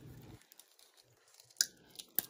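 Faint handling of a shrink-wrapped plastic DVD case, mostly quiet, with one sharp crackle about one and a half seconds in as the shrink wrap is picked at.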